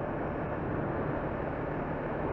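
Steady wind rush and engine drone of a 2013 Honda CBR500R parallel-twin motorcycle cruising at an even speed, picked up by a cheap lapel mic on the rider.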